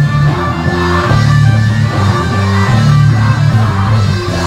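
Live rock band with electric guitars and bass guitar playing a heavy riff of sustained low chords that change every half second or so, unamplified room sound from a rehearsal space.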